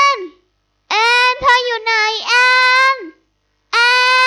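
A girl's high voice calling out a name in long, drawn-out cries, each held steady for about a second and dropping in pitch as it trails off; the middle cry runs longer and wavers partway through.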